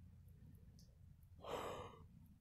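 One breathy sigh, exhaled close to the microphone, about one and a half seconds in, lasting about half a second; otherwise a faint low room hum.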